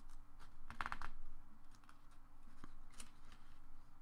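Paper sheets being handled on a desk: a short rustle about a second in and a few scattered soft clicks, over a faint steady hum.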